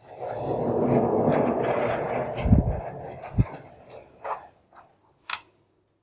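Vertical sliding chalkboard panels being pushed along their tracks: a rumbling slide of about two and a half seconds that ends in two heavy thuds as the boards stop. A few lighter knocks follow.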